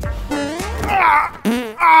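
A man's drawn-out straining cries with sliding pitch, in two stretches, as he strains to hang on, over background music.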